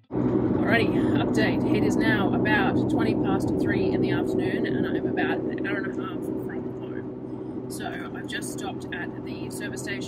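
Steady drone of a car's engine and tyres heard inside the moving cabin, with a woman's voice over it.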